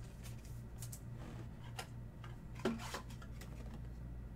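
Trading cards and a clear rigid plastic top loader being handled: light scattered clicks and rustles of card and plastic, with one sharper plastic click about three-quarters of the way in. A steady low hum runs underneath.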